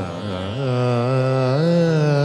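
Odissi classical song: a singer holds long, drawn-out notes with ornamental pitch bends over steady accompaniment, dipping at the start, rising to a held note about half a second in, and wavering near the end.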